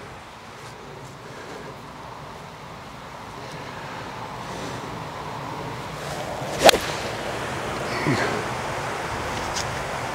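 A two iron striking a golf ball cleanly off fairway turf: one sharp crack about two-thirds of the way in, after a few seconds of low steady outdoor hiss.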